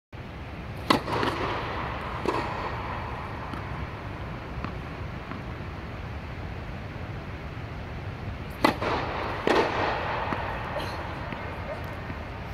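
Tennis balls struck hard by rackets, four sharp cracks that echo around an indoor tennis dome: a serve and its return about a second and a half apart, then a second serve and return about a second apart near the end. A steady low hum runs underneath.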